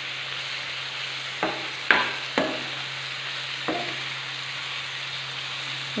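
Chopped onions and tomatoes frying in oil in a non-stick kadai with a steady sizzle. A perforated steel ladle stirs them and knocks sharply against the pan four times in the middle of the stretch.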